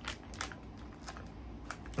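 Faint clicks and crinkles of a plastic-wrapped wax melt being handled, a few scattered ticks over low room hum.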